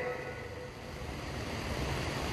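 Steady low background noise with a faint hum, picked up by the lectern microphone in a pause in a man's speech.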